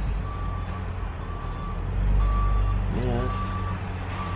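Reversing alarm on a large vehicle beeping about once a second, each beep about half a second long and one steady pitch. A diesel engine's low rumble runs underneath and swells about two seconds in.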